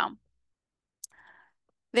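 Silence broken about a second in by a single short, sharp click, followed by a faint, brief hiss.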